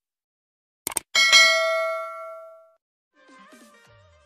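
Subscribe-button animation sound effect: a quick mouse click about a second in, then a bright bell ding that rings out and fades over about a second and a half. Faint music begins near the end.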